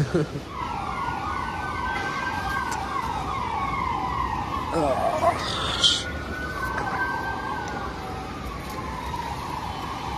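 An emergency vehicle siren, starting about a second in with a fast warble and then wailing in long slow rises and falls in pitch. A brief sharp sound cuts in about six seconds in.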